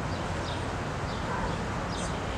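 Steady outdoor background noise: a low rumble with a faint hiss above it, with no distinct event.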